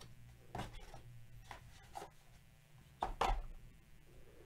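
Handling noise as a thick clear plastic card case is lifted out of its cardboard box and turned in the hands: a few light knocks and rubs, with a louder knock about three seconds in.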